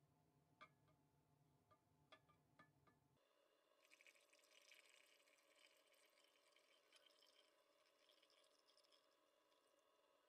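Faint pouring of liquid into a glass beaker, a thin splashing trickle that sets in about four seconds in, after a few light clicks.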